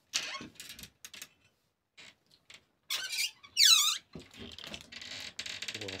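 A wooden cabinet door's hinge gives a loud, high squeak that falls in pitch partway through. A few clicks and knocks come before it, and a rasping scrape follows.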